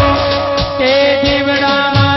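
A male singer holds a long note with vibrato in a live Gujarati devotional aarti, over low drum beats that fall about every two-thirds of a second.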